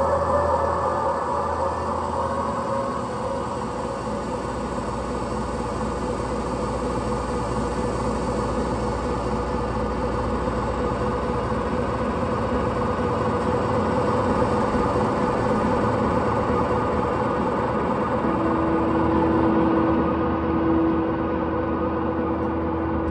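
A live band's amplified instruments holding a droning wash of noise: a dense, steady rumble with held tones and no beat, with a clear sustained high note coming in near the end.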